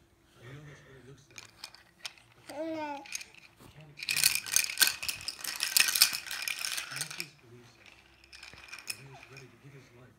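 A baby's plastic rattle-teether toy being shaken, a dense rattling for about three seconds in the middle. Short soft vocal sounds from the baby come before and after it.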